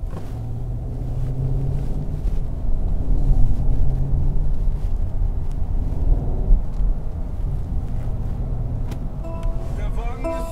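Steady low rumble of road and drivetrain noise inside the cabin of a Mercedes-Benz S580 driving at town speed.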